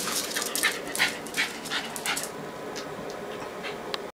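Jack Russell terrier panting in quick breaths, about three a second, worked up after a bath; the breaths grow fainter after about two seconds.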